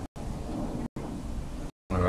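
Steady low rumbling noise with no words, broken twice by brief dead-silent dropouts.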